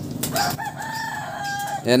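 A rooster crowing once: one long held call of about a second, dropping lower at the end.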